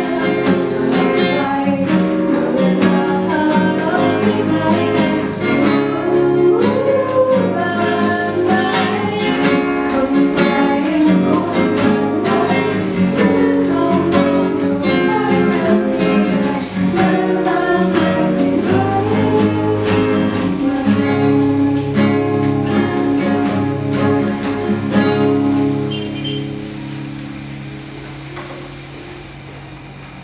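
Classical guitar played with a woman singing along. About 25 seconds in the song ends, and the last chord rings out and fades.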